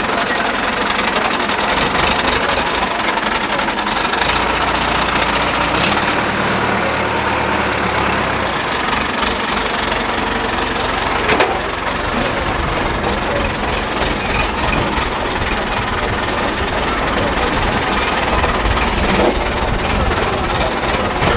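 Diesel engine of a Hydra pick-and-carry crane running steadily, with a single sharp knock about eleven seconds in.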